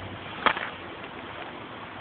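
Steady rush of running creek water, with a single sharp click about half a second in.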